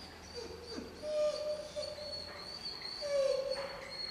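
A young German Shepherd puppy whining in short, high, pitched whines, the loudest near the end. It is the frustrated whine of a dog held back from a toy held just out of reach while it learns self-control.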